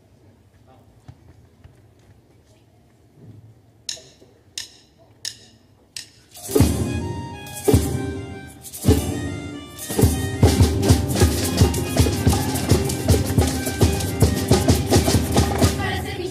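Four sharp clicks, a little over half a second apart, count in a children's carnival comparsa band, which strikes up its popurrí with a few loud opening accents and then plays steady rhythmic music on Spanish guitars and bongos.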